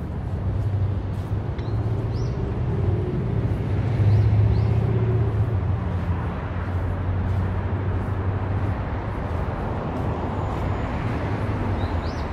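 Busy city street traffic: a steady low engine drone and tyre noise from passing cars and buses, swelling about four seconds in, with a few brief high chirps over it.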